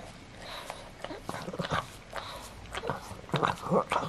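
Pug sniffing and snorting through its short flat nose at close range: a string of irregular short snuffles and clicks, with two short low grunts about three and a half seconds in.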